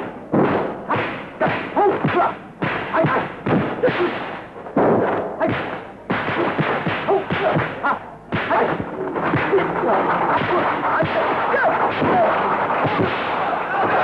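Kung fu film fight sound effects: a rapid run of dubbed punch and kick impacts with short yells from the fighters. About eight seconds in this gives way to a crowd of spectators yelling and cheering.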